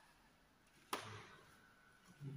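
Near silence with a single sharp knock about a second in, dying away quickly.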